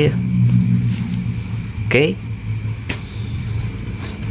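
A steady low hum runs throughout, with a cloth faintly rubbing over the plastic top of a motorcycle battery.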